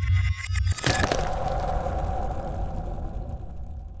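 Designed intro sound effects: rapid glitchy clicks over a deep low pulse, then a sharp hit about a second in that leaves a long whooshing tone slowly fading out.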